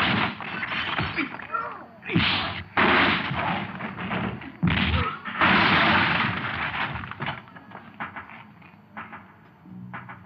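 Fight sound effects of a brawl: punch smacks and bodies crashing into shelves and a counter, over a film music score. Several sharp impacts come in the first half, with a longer crash about five and a half seconds in, then it quietens.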